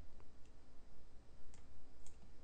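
A few clicks of a computer mouse, spaced irregularly, over a low steady hum.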